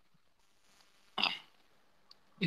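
A single short breathy vocal sound from a person on a voice-chat line, a little past a second in, with near silence around it.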